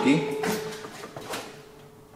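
A few light clicks and knocks, like handling, over a faint steady hum, fading toward the end.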